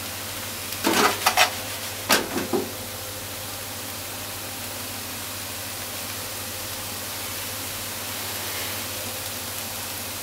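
Fried tofu and chopped negi sizzling steadily in a frying pan, with a quick run of utensil knocks against the pan about a second in and a few more around two seconds, as the pieces are stirred.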